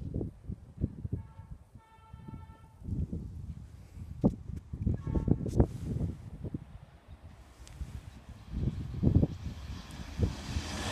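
Low, gusty rumble of wind on the microphone beside the railway, with a short high tone about a second in. Near the end the rush of an approaching electric express train begins to rise.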